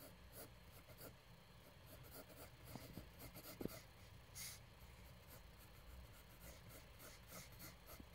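Pencil sketching on paper: faint, short scratching strokes, with one light knock a little under halfway through.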